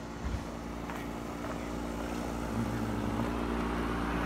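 A steady low machine hum, growing slowly louder, with a short thump about a quarter second in.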